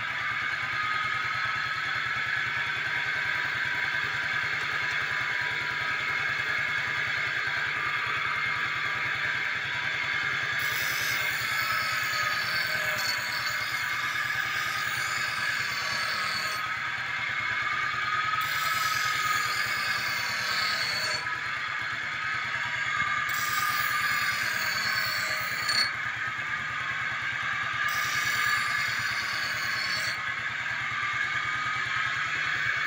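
Motorcycle engine running steadily and spinning a grinding wheel rigged onto the bike, with a whine that wavers slightly in pitch. From about ten seconds in, a steel blade is pressed to the wheel in four spells of a few seconds each, adding a harsh grinding hiss with sparks.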